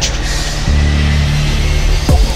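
Electronic goa/psychill trance music in a breakdown. A bright crash or noise swell comes right at the start, then a sustained deep bass and pads with no kick drum.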